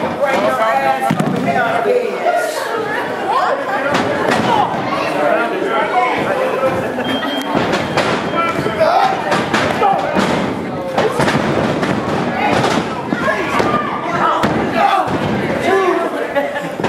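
Repeated thuds of wrestlers' bodies and feet hitting a wrestling ring's mat, over crowd voices and shouting.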